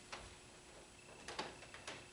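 Quiet room tone with a few faint, irregularly spaced clicks, clustered about a second and a half in.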